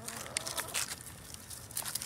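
Footsteps through dry fallen leaves on bare ground: a few short rustles and crackles.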